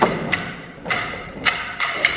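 Wooden dance sticks struck together in a steady rhythm, about two sharp clacks a second, each with a brief wooden ring, over folk band music.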